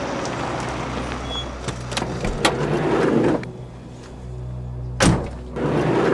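A police car drives up and stops, its running noise dropping away about three and a half seconds in, with a click about two and a half seconds in and a car door slammed shut about five seconds in. A low music drone sits underneath.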